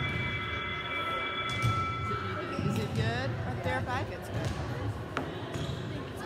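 Volleyballs being hit and bouncing on a hardwood gym floor during warm-up, with sharp scattered smacks and players' voices calling out in a large echoing gym. A steady high tone runs through the first two seconds.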